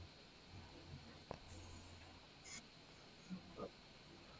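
Near silence on a video call's audio, with a faint low hum and a few weak clicks, while the guest's lagging connection leaves no reply.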